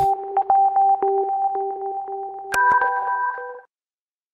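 Short electronic logo sting: a held synth tone over an octave with light ticking clicks, then a sharp click and a brighter synth chord about two and a half seconds in before it stops.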